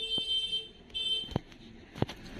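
Two high-pitched electronic beeps about a second apart, the first a little longer than the second, with a couple of faint clicks.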